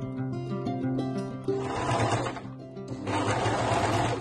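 Background music, with a domestic electric sewing machine running in two short stitching runs of about a second each, starting about one and a half seconds in and again about three seconds in.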